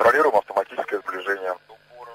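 A voice speaking for about a second and a half, then stopping, leaving only a faint murmur.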